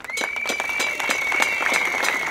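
Outdoor crowd applauding a speech, many hands clapping densely, with a steady high whistle-like tone held over the clapping.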